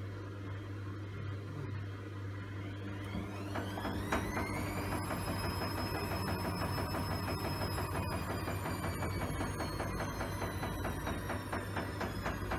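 Front-loading washing machine mid-wash: a steady low hum, then about three seconds in the drum motor starts with a whine that rises steeply, levels off high and sinks slowly, with fast ticking through it as the drum turns.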